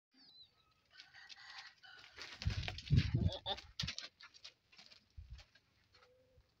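Small birds chirping, with a burst of low knocking and rustling from about two to three and a half seconds in.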